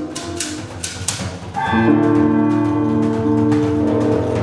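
Live trio music on lute, percussion and electric guitar: a few sharp struck strokes in the first second or so, then about one and a half seconds in, long held pitched notes come in and sustain.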